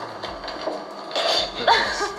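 Several people's voices in a room, low and jumbled at first, then louder short vocal bursts from a little after one second in.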